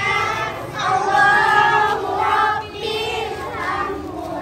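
A group of schoolchildren singing a welcome song together in unison, with long held notes.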